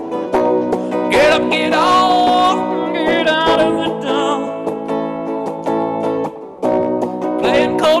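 A man singing over steady guitar accompaniment, his voice coming in phrases above sustained chords.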